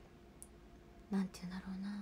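A woman speaking: after about a second of near silence she draws out a single hesitant syllable, 'u-na', while searching for a word.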